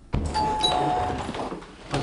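Doorbell chiming two notes, a higher one then a lower one, about half a second in, heard inside a small flat.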